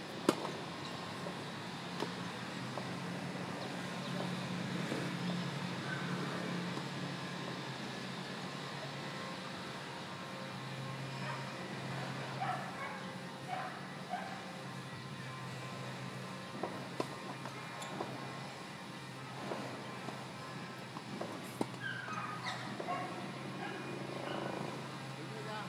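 A tennis racket strikes a ball with a sharp pop shortly after the start. Further scattered hits and ball bounces follow over a steady low background hum.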